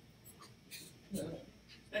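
Faint, brief murmured speech sounds and breaths in a small room, with a couple of short hissy noises.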